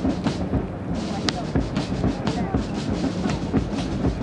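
Outdoor ambience: a steady low hum under a dense background of indistinct voices, with a few scattered sharp clicks.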